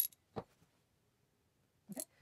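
Mostly near silence while essential oil is dispensed from a glass dropper, with a click at the start and a short soft tap about half a second in, from the glass dropper handled at an amber glass bottle.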